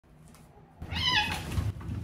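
A cat meows once, a short high meow falling slightly in pitch, about a second in. Under it a low rumble starts as a cat exercise wheel begins to roll under a running cat.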